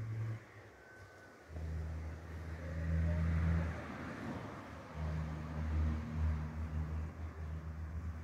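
A motor vehicle engine running close by, a low hum that comes in about a second and a half in, is loudest around three seconds, eases off and swells again about five seconds in.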